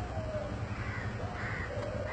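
Stainless-steel folding gate closing: a steady low rumble as it moves, with short, repeated high squeals.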